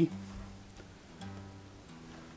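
Acoustic guitar picked with a plectrum: the low G, on the sixth string at the third fret, is played twice, the second time about a second in, each note ringing and fading.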